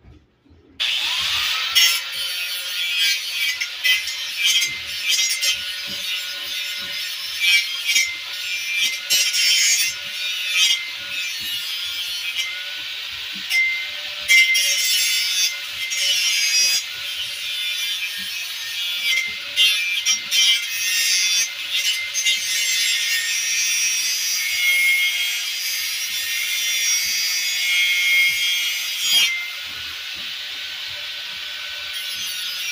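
Angle grinder spinning up about a second in, then running against steel, a steady motor hum under a dense, crackling grinding hiss.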